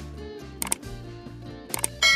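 Background music with sharp mouse-click sound effects from a subscribe-button animation, once about two-thirds of a second in and a quick run of clicks near the end.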